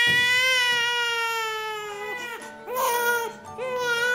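A newborn baby crying: one long wail that trails off about two seconds in, followed by two shorter cries.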